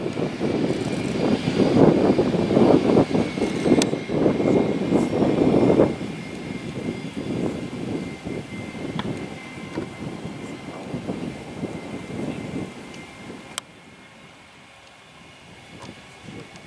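Twin-turbofan engines of a Cessna CitationJet CJ3 business jet at taxi power: a rough rumble, loudest for the first six seconds, then easing and fading out near the end, over a steady high turbine whine.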